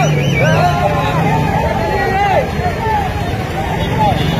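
A crowd shouting and talking over one another, several raised voices at once, with a steady low engine hum underneath.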